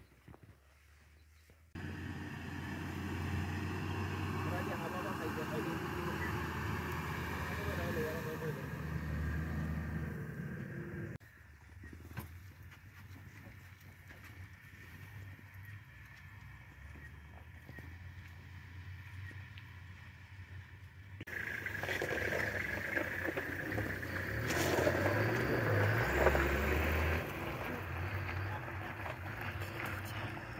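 Low, steady hum of an idling vehicle engine with quiet, indistinct voices of people nearby. The sound jumps abruptly louder about 2 seconds in, drops quieter about 11 seconds in, and grows louder again about 21 seconds in.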